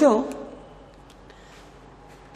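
A man's voice trailing off at the end of a word, then a pause of faint room tone with a few very faint ticks.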